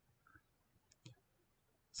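Near silence: quiet room tone with a couple of faint computer-mouse clicks about a second in.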